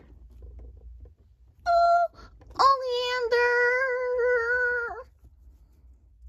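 A young girl's voice sings a short note, then holds one long steady note for over two seconds, without words.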